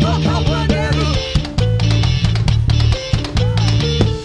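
Live band playing upbeat gospel music, with a steady drum kit beat over a heavy bass line.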